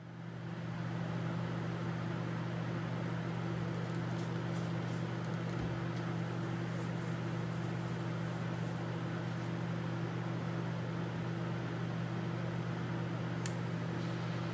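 Laminar flow hood blower running steadily: a low hum of several held tones under an even rush of air.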